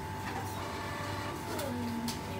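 Steady machine hum with a thin high whine over a low drone, and faint voices in the background.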